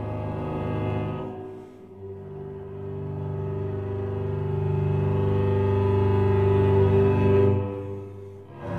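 Cello and double bass playing long bowed notes together in a low register. A held chord fades out about a second in, then a new chord enters, swells louder and breaks off shortly before the end.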